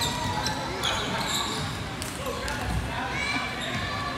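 A basketball bouncing on a hardwood gym floor, with short high-pitched sneaker squeaks as players run, echoing in a large hall.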